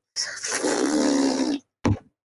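A person's drawn-out, breathy groan-like vocal noise lasting about a second and a half, followed by a brief low thump near the end.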